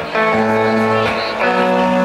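Live acoustic and electric guitars playing the song's opening chords, each chord ringing out and changing about every second and a half.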